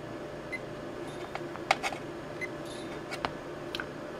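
A few sharp clicks from the buttons of a Kill A Watt EZ plug-in power meter being pressed, over a faint steady electrical hum.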